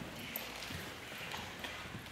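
Low room noise from a seated audience in a hall: irregular light knocks and shuffling.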